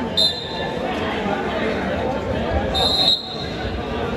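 Steady crowd chatter in a school gymnasium, cut through by two short, shrill referee's whistle blasts: a quick one just after the start and a longer one about three seconds in.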